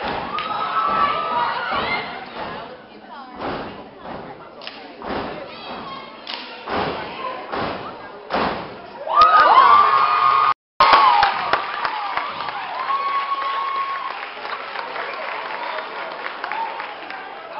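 Fraternity steppers stomping in unison on a stage, a run of sharp separate stomps through the middle. The crowd shouts and cheers at the start and again more loudly about nine seconds in. The sound cuts out for an instant just before eleven seconds.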